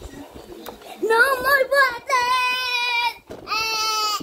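A young child's high voice letting out three long, wordless calls with short breaks between them, starting about a second in: the first wavers up and down in pitch, the next two are held steady.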